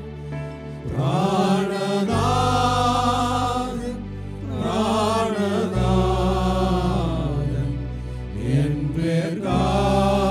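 Group of men singing a slow Malayalam Christian hymn together in long, held phrases, over keyboard accompaniment with sustained low notes. The singing pauses briefly about four seconds in and again near nine seconds.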